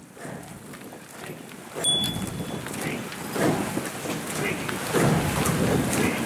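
Indistinct shouting voices, loud calls coming roughly every second and a half, over wind noise on the microphone. A short high beep sounds about two seconds in.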